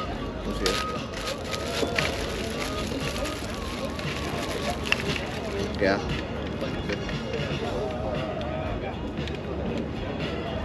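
Background chatter of a crowd with faint music, and a few light clicks and knocks.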